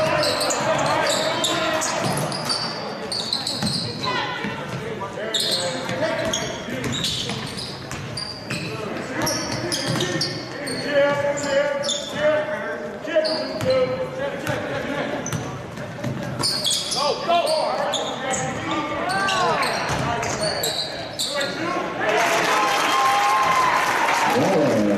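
Live basketball play in a large gymnasium: a basketball dribbling and bouncing on the hardwood floor, with sneaker squeaks and players calling out on the court.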